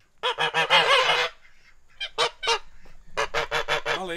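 Domestic white geese honking loudly in quick runs of calls: a burst in the first second, a few honks around two seconds in, and another run near the end.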